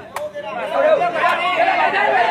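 Crowd of spectators chattering and calling out, many voices overlapping, with a single sharp tap just after the start.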